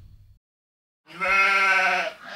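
The tail of an intro music hit dies away. After a short silence comes a drawn-out voice sound of about a second, held at one steady pitch and bleat-like.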